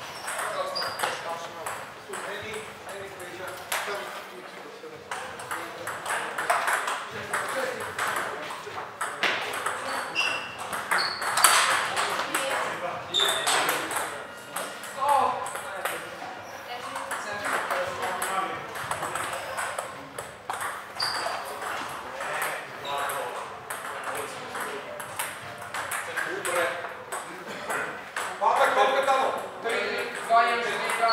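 Table tennis rallies: the ball clicking rapidly back and forth off the paddles and a Joola table, with short breaks between points.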